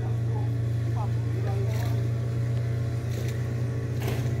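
An engine running steadily with an even low hum, with faint voices in the background.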